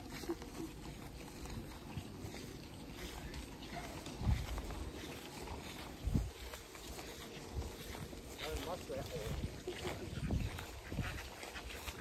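Ducks quacking faintly, the racket coming from the duck pens, with a few low bumps on the microphone.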